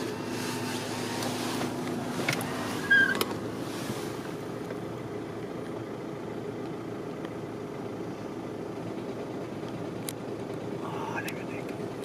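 Car engine idling with a steady low hum, with a few sharp clicks in the first three seconds.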